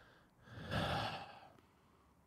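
A man's heavy sigh close to the microphone: one long breath out lasting about a second, the sigh of exasperation.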